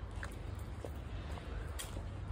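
Footsteps on a gravel-strewn dirt road, a faint crunch about every half second at walking pace, over a steady low rumble on the microphone.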